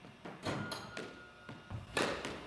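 Several sharp knocks of a squash ball in play: racket strikes and the ball hitting the court's walls and floor, spaced irregularly through the two seconds, with the player's shoes on the wooden floor.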